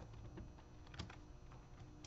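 Faint, scattered light clicks and taps from handling things on a desk while someone looks up a passage, the sharpest about a second in, over a low steady room hum.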